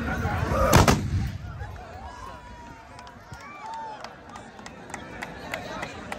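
A tbourida troupe's charge: the rumble of galloping horses ends about a second in with one loud volley of black-powder muskets fired almost together, a short ragged burst of cracks. After it comes crowd noise, with voices and calls.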